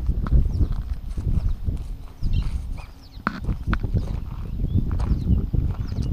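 Footsteps of someone walking with a handheld camera, a string of irregular knocks over a fluctuating low rumble of wind on the microphone, with a few short high chirps.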